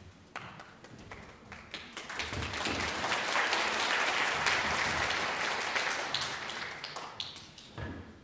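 Audience applause in a hall: scattered claps that swell into full applause about two seconds in, then thin out and die away near the end.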